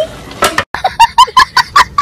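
A young child laughing in quick, high-pitched bursts, about five a second, starting just after a brief dropout a little under a second in.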